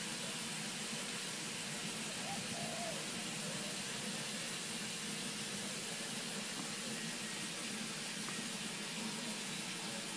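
A steady, even hiss from a running wood-fired monotube steam boiler rig.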